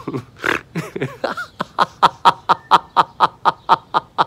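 A man's deliberate laughter-yoga laughter: after a breathy gasp he laughs in a long, even run of short 'ha' pulses, about five a second.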